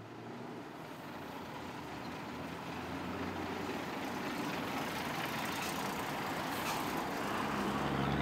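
Garbage truck's engine running as it drives slowly up and past, growing steadily louder as it approaches.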